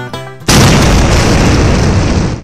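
Banjo music for the first half second, then a loud explosion sound effect cuts in sharply and holds as a steady wall of noise.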